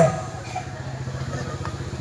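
A steady low hum under faint background noise.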